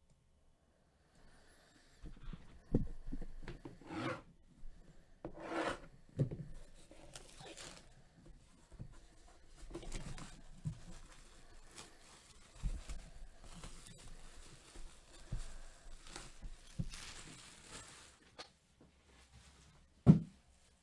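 A sealed trading-card box being unwrapped and opened by hand: packaging rustles and scrapes in irregular bursts, with several knocks and a sharp thump near the end.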